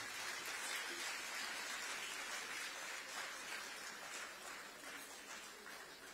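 Audience applauding in a hall, the clapping slowly fading.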